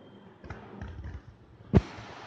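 Light knocks and soft thuds of hands setting a cleaning cloth and objects down on a newspaper-covered table, then one sharp knock near the end followed by a steady hiss.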